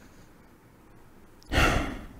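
A person's sigh: a single short, breathy exhale about one and a half seconds in, after a faint, quiet stretch.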